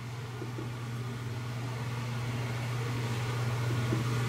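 Steady low hum of room background noise, with a faint even hiss above it and no distinct events.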